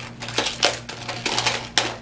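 Clear plastic magnetic building tiles clacking against each other as they are sorted through by hand, a series of irregular sharp clicks.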